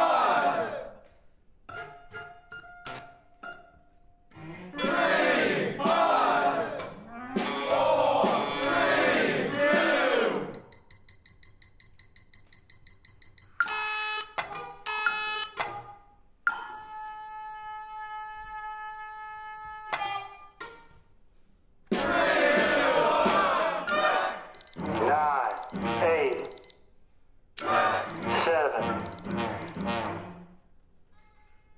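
Contemporary chamber-ensemble music with sampled sounds: short struck notes, passages of voice-like sound, a rapid high beeping at about six pulses a second, and a held chord of steady tones.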